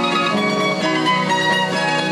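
A pear-shaped, many-stringed rondalla instrument picked with a plectrum, playing a quick run of notes, with a classical guitar accompanying.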